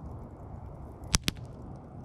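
Wood embers crackling faintly, with two sharp pops close together just over a second in.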